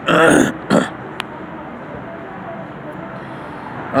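A man coughing twice in quick succession, then a steady background noise.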